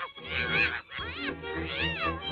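Three short, high, wavering animal-like cries, each rising and falling in pitch, over music on an early 1930s cartoon soundtrack.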